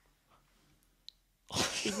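Near silence for about a second and a half, broken by one faint tick about a second in, then a person starts speaking.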